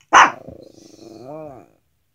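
A Pomeranian gives one sharp bark, then a low rough grumble that ends in a short moaning note rising and falling in pitch.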